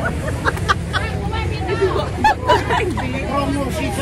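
Several women chattering and laughing over one another in short bursts, over a steady low rumble.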